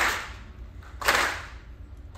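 Audience slow clap: the crowd clapping together in unison, one clap about every second, each trailing off briefly. Two claps fall here, one right at the start and one about a second in.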